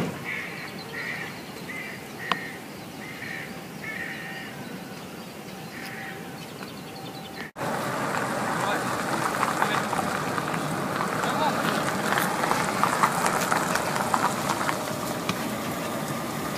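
Footsteps on asphalt, with a short squeak at each step about every two-thirds of a second. After a cut about halfway, louder outdoor noise of people walking, with faint voices.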